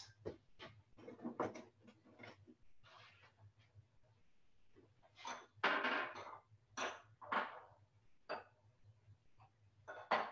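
Faint, scattered kitchen handling noise: a few short knocks and clatters of containers and utensils, louder for a moment about halfway through, over a low steady hum.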